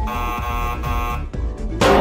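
A game-show 'wrong answer' buzzer sound effect sounds for about a second, marking the judges' rejection, over background music. Near the end a loud, bright musical hit comes in.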